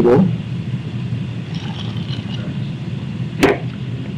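Steady low background rumble, with one short sharp sound about three and a half seconds in.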